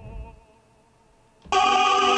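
A short pause, then about one and a half seconds in an opera recording comes in loud: a male opera singer singing in full voice with accompaniment.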